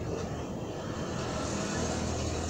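Steady low background rumble with a faint hiss, like a distant engine or motor. It grows slightly louder near the end.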